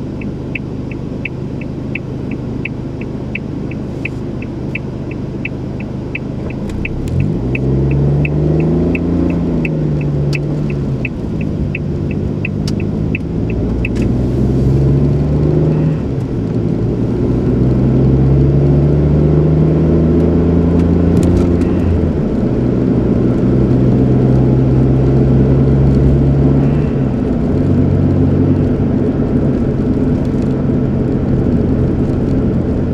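A car's turn-signal relay clicking steadily, about one and a half clicks a second, over the engine idling inside the cabin. About seven seconds in the car pulls away and the engine note climbs and falls back through several gear changes. The clicking stops about halfway through, and the car then cruises with a steady engine and road noise.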